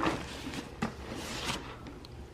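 Handling noise from a child's plastic water bottle being picked up and turned over: light rustling with a few soft knocks, about three in two seconds.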